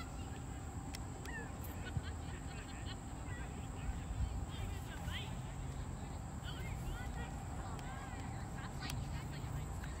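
Open-air sports-field ambience: faint distant voices of players and spectators calling across the pitch, mixed with many short chirping calls scattered throughout, a steady thin high-pitched drone and a low rumble.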